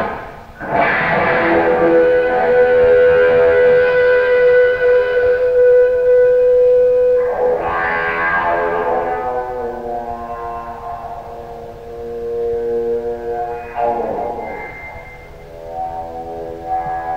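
Distorted electric guitar played with a violin bow through an echo effect: long sustained, eerie tones with no drums behind them. Three swells come in about six to seven seconds apart, and a steady held note rings through the first half.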